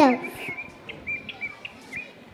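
Faint chirping of small birds: a few short, high chirps scattered through a quiet stretch, just after a voice ends at the very start.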